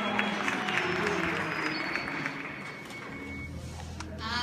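Audience applauding, with scattered voices, dying down toward the end.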